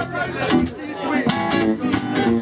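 Live band music with guitar playing, punctuated by sharp percussive hits.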